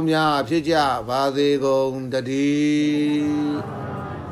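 A man chanting a Buddhist blessing, his voice rising and falling through several short phrases and then holding one long steady note that breaks off about three and a half seconds in.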